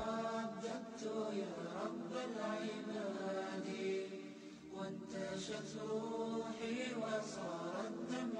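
A voice chanting a slow melodic line with long held notes that bend from one pitch to the next.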